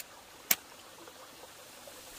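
Faint steady trickle of a shallow stream, with one sharp knock about half a second in as a machete slices peel off a fruit on a wooden plank.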